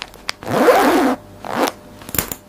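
A metal zipper on a satin pouch being pulled shut. There is one long zip, then a short second pull near the end.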